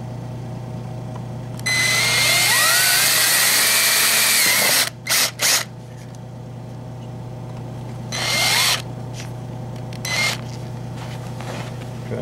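Mastercraft power drill boring into the plastic rim of a planter pot: one run of about three seconds, two short bursts, then a shorter run and a last brief burst.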